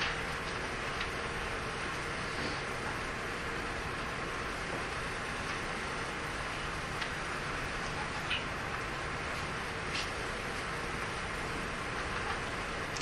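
Steady background hiss of a classroom's room tone, with a few faint short ticks.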